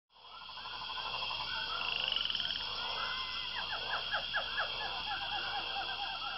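Tropical jungle ambience fading in: frogs croaking and chirping calls over a steady high insect drone, with a run of quick falling chirps about halfway through.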